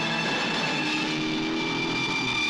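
Film soundtrack of a police car driving hard on dirt: a car engine running with a noisy rush of tyres and grit.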